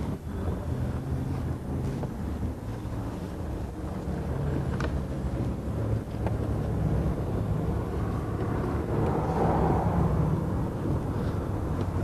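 Car engine running, heard from inside the cabin as a steady low hum, with faint traffic noise swelling briefly near the end and a couple of light clicks midway.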